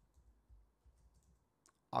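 Faint computer keyboard keystrokes: a few irregular taps, about two or three a second, as a short word is typed.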